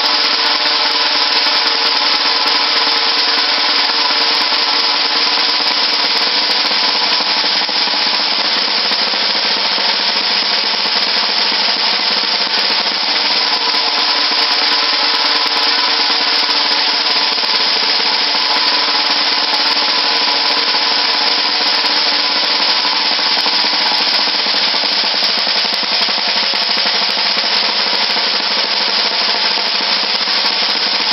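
Snare drum struck with wooden drumsticks in a fast, sustained double stroke roll, so dense and even that the strokes run together into one unbroken sound.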